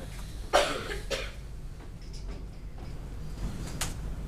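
A person coughing twice in quick succession, a sharp cough about half a second in and a weaker one about half a second later. A single sharp click comes near the end.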